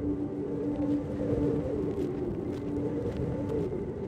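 Wind rumbling on the microphone, a steady low noise without clear events, under a low held drone from ambient background music that fades out near the end.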